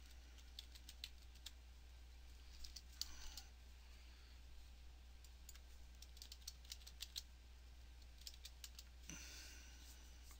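Faint computer keyboard typing and mouse clicks in scattered short clusters, over a low steady hum.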